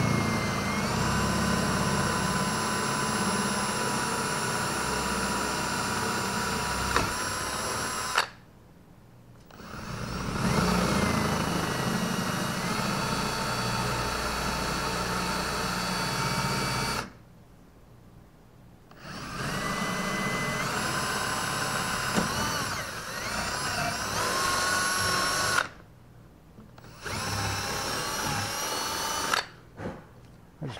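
A cordless drill bores holes through a boat's gel-coated fiberglass hull. It runs in four bursts, the first three several seconds long with short pauses between, the last one brief. The motor's pitch steps up and down as the trigger is feathered.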